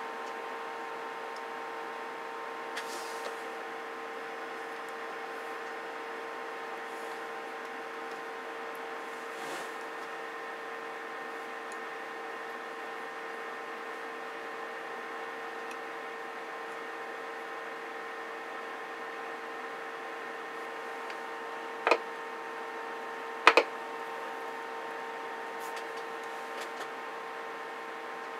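Steady electronic hum of several fixed tones from the bench's radio test setup while a CB radio is keyed into test gear. Two short clicks come about three-quarters of the way through.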